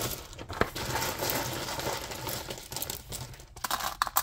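Wooden letter tiles clattering: a sharp click about half a second in, a steady rattle of tiles against each other, then several quick clicks near the end as tiles are set down on the cards.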